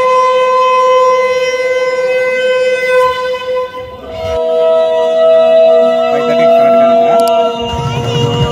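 Ceremonial military bugle holding one long steady note, cut off sharply about four seconds in. A second long held note follows, slightly higher and rising a little, and crowd noise comes up near the end.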